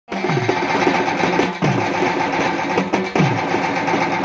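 Live devotional bhajan accompaniment: a hand drum's bass strokes slide down in pitch in a pattern that repeats about every second and a half, over steady held instrument tones.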